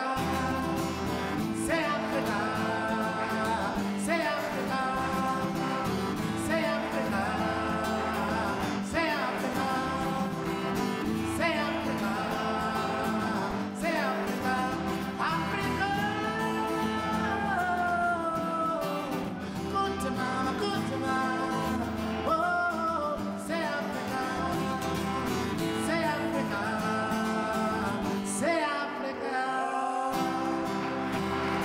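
Live solo performance: a steel-string acoustic guitar played in a steady rhythm under a man's singing voice.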